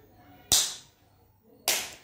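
A young child's hand claps: two single claps about a second apart, each sharp and quickly fading.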